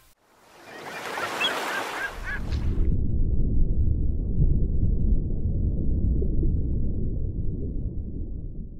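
A hiss of outdoor ambience with a few short bird chirps dies away about three seconds in. It is replaced by a steady low rumble that carries on to the end.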